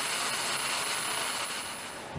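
Jet engine running steadily on the ground: an even rushing noise with a thin high whine, which cuts off just before the end.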